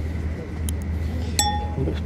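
Steady low hum of a high-speed train carriage running, with one sharp clink that rings briefly about one and a half seconds in and a fainter tick just before it.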